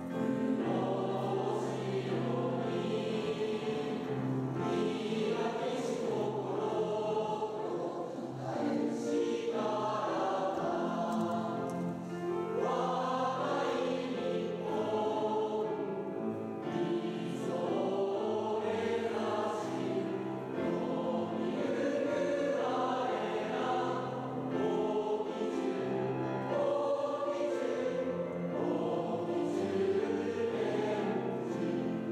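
A choir singing a song in long sung phrases over sustained low notes.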